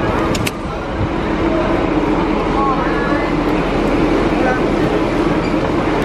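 Loud, steady rumbling noise with indistinct voices faintly in the background.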